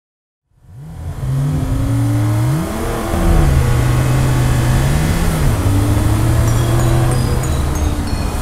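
A car engine running and revving, fading in about half a second in; its pitch climbs and falls back twice, then holds steady. Faint high tones join near the end.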